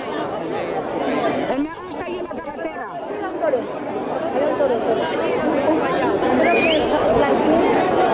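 Crowd of people chattering and calling out at once, many overlapping voices with no single speaker standing out, growing slightly louder. A brief rising shout or whistle cuts through once, past the middle.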